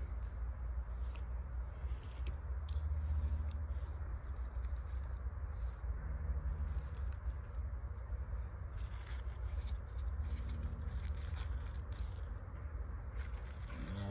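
Small crackles and rustles of dry fatwood shavings and cardboard egg carton being handled by hand, irregular light clicks over a steady low rumble.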